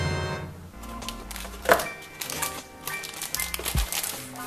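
Background music playing, with the crinkling of the plastic bag holding a model kit's runners as it is handled, loudest about a second and a half in.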